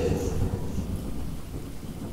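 Thunder rumbling and dying away over steady rain.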